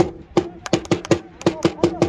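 Football supporters clapping a rhythm, about eight sharp claps, in the gap between chanted shouts of "Yarmouth!"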